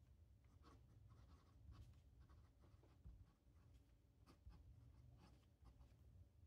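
Benu Talisman fountain pen with a broad nib writing on paper: faint, short scratchy nib strokes in an irregular run as the letters are formed.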